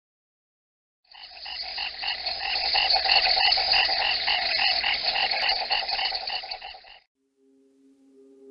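Frogs calling in a rapid, evenly pulsed chorus, about three to four pulses a second, starting about a second in and cutting off suddenly near the end.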